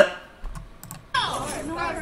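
A short lull with a few faint clicks. Then, about a second in, several people start talking at once in the played video's audio.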